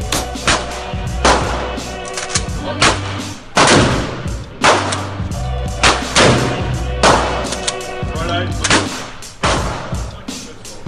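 Firearm shots at an indoor range, fired one at a time, about ten of them roughly a second apart at uneven intervals, each followed by a short echo off the range walls. Background music with a steady bass line plays under the shots.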